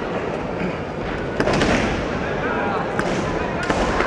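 Sports-hall din at a kendo match: voices and shouts over a steady background, cut by a few sharp cracks about a second and a half in, at about three seconds and near the end, typical of bamboo shinai strikes on armour.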